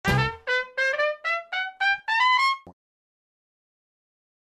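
A short intro fanfare: a quick run of about seven bright notes climbing in pitch, ending on a longer held note, then cutting off after about two and a half seconds.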